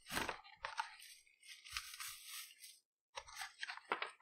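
Plastic wrapping crinkling and a cardboard box being handled, in several short crackling bursts with a brief pause near the end.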